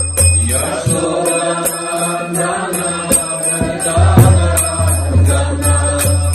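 Devotional chanting sung to a steady beat of small hand cymbals (karatalas), about three strikes a second with a lingering metallic ring, over a low sustained drone.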